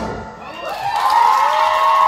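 A live song's final held chord fades out; then the audience applauds and cheers, with a voice rising into a long held shout.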